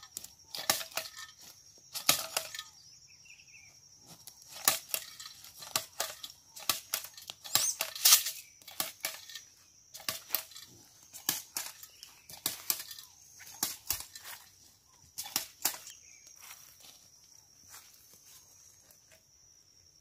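Hand-held jab seed planter stabbed into dry, leaf-strewn soil as corn is sown: a series of irregular sharp clacks about once a second, mixed with crunching of dry leaves underfoot.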